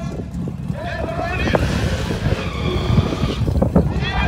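Drag car at the start line, engine running and tyres squealing in a burnout that swells about two seconds in and fades near the end, with nearby voices and a steady low rumble.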